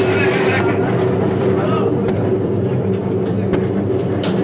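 A steady machine hum with a constant tone, over faint background voices and a few sharp clicks.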